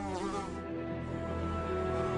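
A fly buzzing with a wavering pitch for about the first half second, over soft background music with sustained tones.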